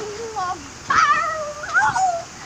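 A young child's wordless high-pitched squeals, sliding up and down in pitch in two or three calls, the highest and loudest about a second in.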